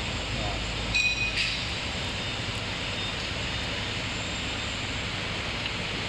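Steady background noise of a factory workshop, with a short high-pitched tone about a second in.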